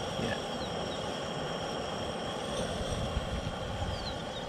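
Propane camp stove burner turned up to a strong flame under a stainless steel pot, a steady hiss as it heats water for coffee.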